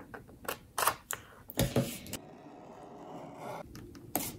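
Small scissors snipping through vellum paper: a few sharp clicks in the first two seconds, the loudest pair about a second and a half in. Then quieter paper handling, with a couple more clicks near the end.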